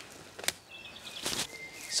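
Footsteps on frozen woodland leaf litter: a sharp snap about half a second in and a louder crunch just after a second, over faint bird calls.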